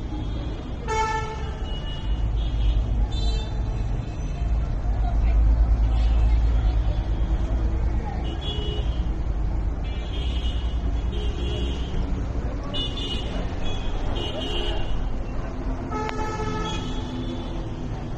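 Street traffic with vehicle horns honking: a loud horn about a second in and again near the end, with shorter high-pitched toots in between, over a steady low rumble.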